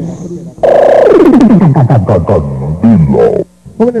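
Sonidero sound-system voice effect, loud and cutting in suddenly: a deep, pitch-shifted sound slides steeply downward, then breaks into slow, deep, wavering laugh-like syllables before cutting off abruptly.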